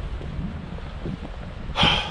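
Wind buffeting a body-worn camera's microphone: a steady low rumble, with a short, louder noisy burst near the end.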